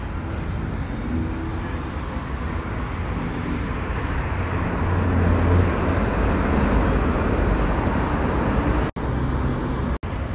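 Street traffic noise: a steady low rumble of passing vehicles, swelling a little about halfway through, with a brief dropout near the end.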